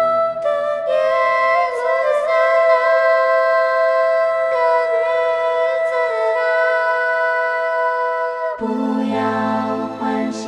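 Slow choral music for SATB choir and orchestra: sustained, held chords with a gently moving sung line. The low parts drop out about half a second in and come back near the end.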